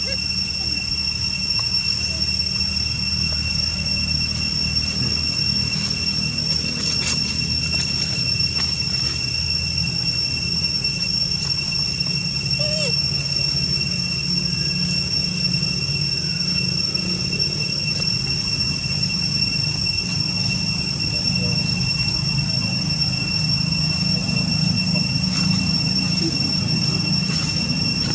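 Steady high-pitched insect drone, as from cicadas, one unchanging whine over a low rumble, with a few faint short chirps.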